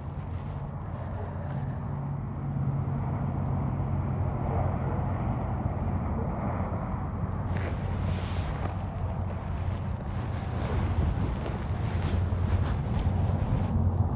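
Steady low outdoor rumble with a faint hiss above it. From about halfway through, light irregular ticking and rustling joins in.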